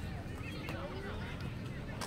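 Faint distant voices calling out over a low, steady outdoor background rumble.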